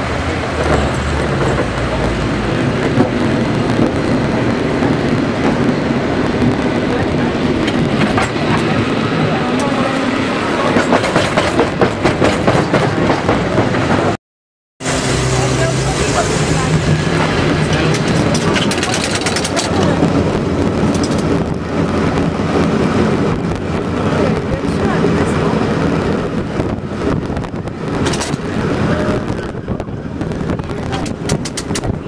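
Riding aboard a San Francisco cable car: a steady, loud rumble and clatter of the moving car and street traffic, with passengers' voices in the background. The sound cuts out completely for about half a second a little under halfway through, where the recording is edited.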